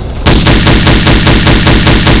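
Automatic rifle firing a sustained fully automatic burst, very loud, at about seven shots a second. It starts about a quarter second in.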